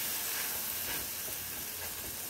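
Naan dough cooking on a hot non-stick tawa, with a steady soft sizzle from the water sprinkled on it and on the pan.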